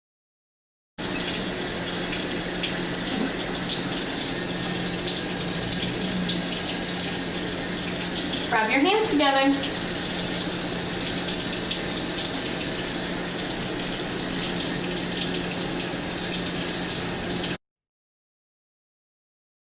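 Kitchen faucet running steadily into the sink, starting about a second in and cutting off just before the end. A voice speaks briefly about halfway through.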